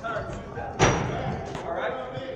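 A single loud bang about a second in, ringing briefly off the hard walls of the corridor, over background voices.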